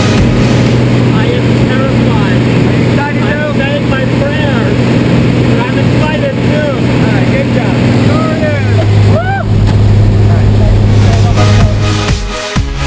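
Single-engine light aircraft's piston engine and propeller droning steadily in the cabin, with voices raised over the noise. About eight and a half seconds in, the engine note drops lower and grows stronger.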